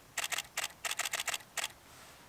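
DSLR shutter firing in burst mode: four short runs of rapid clicks, each run a handful of frames fired in quick succession.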